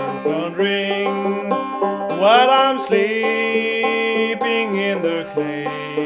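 Fretless open-back banjo in double-C tuning played in three-finger picking style, an instrumental passage between sung verses, with notes sliding up in pitch about two seconds in.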